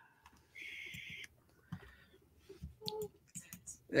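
Faint computer mouse clicks, several scattered short ones through the second half, after a brief soft hiss about half a second in. A faint murmur of a voice comes through now and then.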